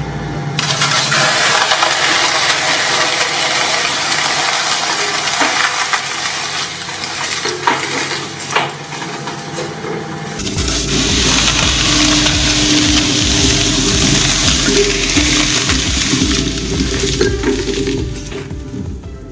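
Twin-shaft shredder's steel cutters crushing a block of floral foam studded with dry spaghetti: a dense, loud crunching noise with scattered sharp snaps. About ten seconds in the sound changes, and a deeper machine rumble comes in as the cutters keep chewing through the pieces.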